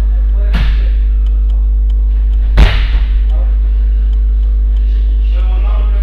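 Bodies landing on a wrestling mat during throw practice: a thud about half a second in and a louder one about two and a half seconds in. A loud steady low electrical hum runs underneath.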